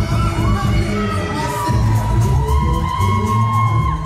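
Dance-routine music with heavy bass and long held high tones, played loud over a hall's speakers, with an audience cheering and shouting over it.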